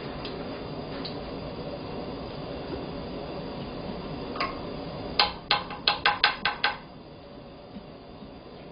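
Corn batter ball deep-frying in hot oil in a wok, a steady sizzle. About five seconds in comes a quick run of about seven clinks, a metal spoon knocking against a dish, and the sizzle is quieter afterwards.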